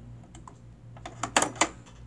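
Built-in needle threader of a Brother PE-770 embroidery machine being worked: a few faint ticks, then a quick cluster of sharp clicks about a second and a half in as the threader is pressed and released. It threads the needle cleanly, which indicates the needle is probably inserted correctly.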